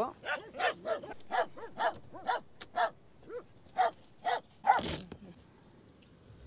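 Small dogs barking in a quick run of short, high yips, about three a second, that stop about five seconds in, just after a brief noisy burst.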